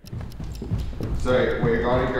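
Footsteps going down a wooden staircase, a quick run of hard knocks, with a man starting to speak about a second in.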